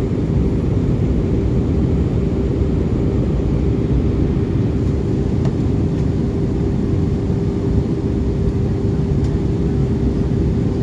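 Cabin noise of a jet airliner during descent, heard at a window seat beside the underwing turbofan engine: steady engine and airflow noise, heaviest in the low end, with a steady hum running through it.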